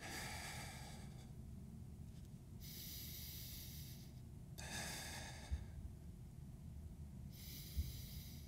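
A man breathing slowly and audibly through a held forearm plank: about four long, airy breaths with pauses between them, as he braces his abdominal muscles. Two brief low thumps come about five and a half seconds in and near the end.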